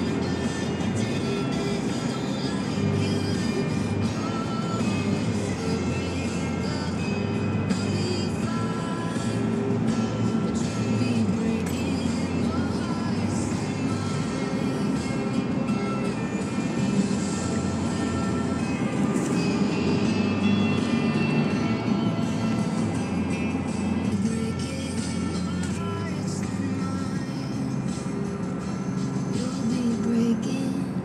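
Music playing on the car radio inside the moving car's cabin, with the car's road and engine noise underneath.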